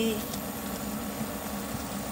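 A steady low mechanical hum runs under okra pieces being dropped into a pot of beef in sauce, which land with only a faint soft plop or two.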